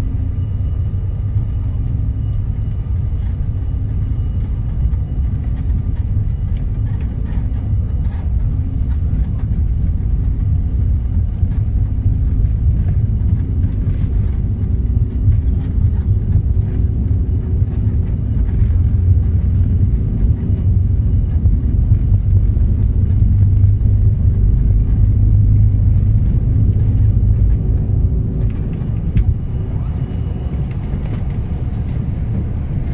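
Small airliner's cabin during the takeoff roll: a loud, steady low rumble of engines and wheels on the runway with a faint steady whine over it, growing louder past the middle as the plane gathers speed.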